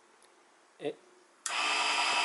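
Mini wood lathe's DC motor switched on at its lowest 12 V setting: a click about a second and a half in, and at once a steady motor whine with several steady tones as it spins the fir blank.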